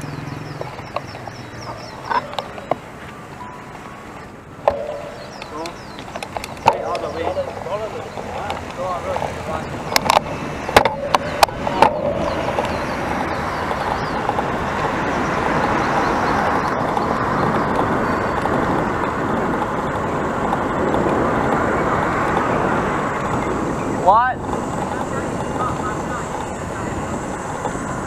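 Wind and road noise on a handlebar-mounted action camera while riding a road bicycle, with a few sharp clicks before halfway; from about halfway the noise grows into a steady, louder rush.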